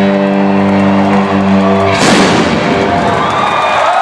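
Live rock band holding a sustained electric-guitar chord that is cut off about two seconds in by a final loud crash, followed by the crowd cheering.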